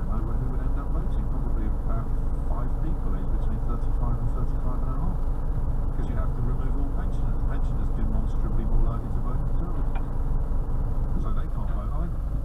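Lorry's diesel engine idling steadily, heard inside the cab, with faint radio speech underneath.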